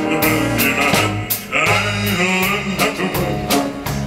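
A baritone singing a show tune with a live band behind him: electric guitar, keyboard and drums keeping a steady beat on the cymbals.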